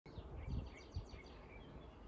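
Faint outdoor garden ambience: birds chirping several times over a low background rumble.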